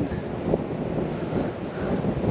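Strong wind buffeting the microphone, a rough, uneven rumble concentrated low.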